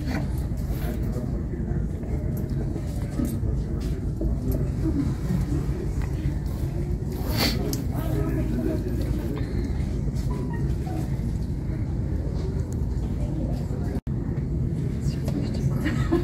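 Steady low rumble of ground vehicles and machinery on an airport apron, with one brief sharp noise about seven and a half seconds in.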